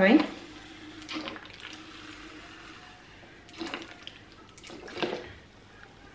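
Cleaning vinegar pouring from an upturned plastic water bottle into a narrow spray bottle, a faint steady trickle with a few brief handling noises about three and a half and five seconds in.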